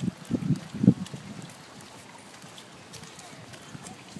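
Irregular low thumps and rumbles on the microphone of a handheld camera as it is carried along, strongest for about the first second, then settling to a steady faint outdoor hiss.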